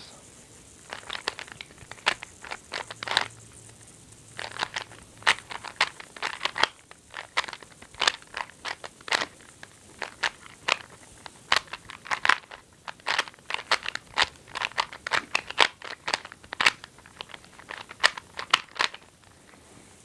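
Plastic Megaminx being twisted by hand: a quick, irregular run of clicks and clacks as its faces are turned through an edge-placing algorithm.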